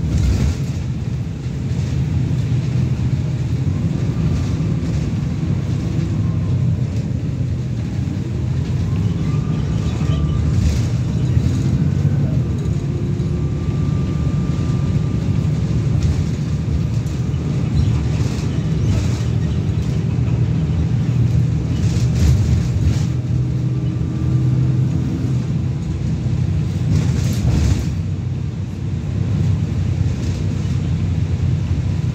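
Stagecoach single-decker bus 21257 (YJ09 FWE) under way, heard from inside the saloon: a steady engine and road drone, with a faint whine that comes and goes and a few short knocks and rattles.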